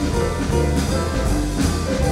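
Live jazz piano trio playing: grand piano, plucked double bass with a steady moving bass line, and a drum kit played with sticks, with cymbal strokes running throughout.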